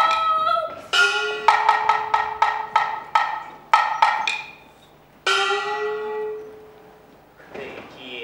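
Kunqu opera percussion: a run of sharp wood-block and drum strikes, coming faster, over a ringing gong. About five seconds in, a single gong stroke rings and fades. It follows the end of a sung note, and a spoken line begins at the very end.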